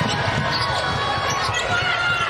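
Basketball dribbled on a hardwood court: repeated low thumps over steady arena noise.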